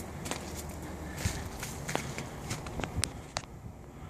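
Light, irregular clicks and taps, about three or four a second, over a low steady background rumble; they stop shortly before the end.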